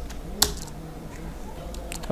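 Keystrokes on a computer keyboard: a sharp key click about half a second in and another near the end, with a few fainter taps between, over a low steady hum.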